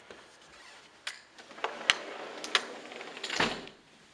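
A door being handled and shut: a few sharp clicks and knocks, then a longer scrape about three and a half seconds in.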